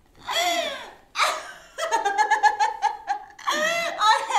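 A woman laughing heartily in about four peals, the longest a quick run of 'ha-ha's in the middle.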